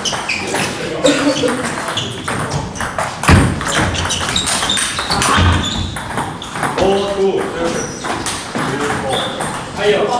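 Table tennis rally: a celluloid ball clicking off bats and the table in a hard-floored hall, with voices talking over it. A heavy thud about three seconds in is the loudest sound, and a lighter one follows a couple of seconds later.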